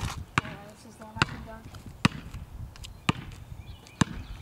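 A basketball bouncing on pavement, four sharp bounces about a second apart.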